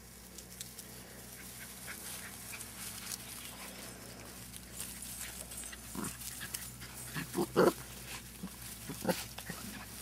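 Small dachshund puppies at play giving a few short, separate yaps from about six seconds in, the loudest two close together just before eight seconds, over faint scattered clicks.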